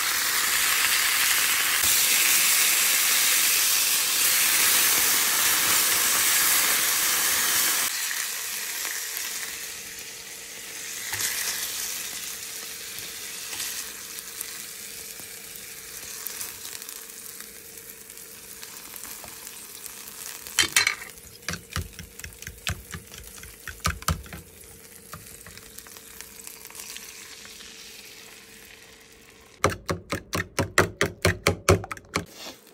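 Food frying in a hot pan: a loud, steady sizzle for the first eight seconds or so, then a much quieter sizzle with a faint steady hum beneath. From about two-thirds of the way in come a handful of sharp knocks, like a utensil striking the pan.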